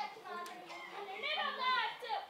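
A child's voice speaking in a high pitch that swoops up and down, with a brief click about a quarter of the way in.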